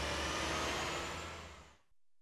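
Steady low rumble with hiss that fades out to silence just before the end.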